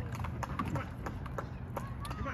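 Small waves lapping and slapping close by in quick, irregular knocks, over a steady low rumble.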